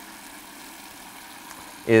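Tap water running steadily from a kitchen faucet into a stainless steel sink.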